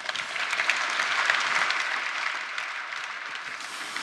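Audience applauding, swelling within the first second and then slowly dying away.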